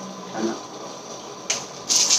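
Quiet room, then about one and a half seconds in, a short burst of clear plastic packaging crinkling as it is handled, with more crinkling starting again at the end.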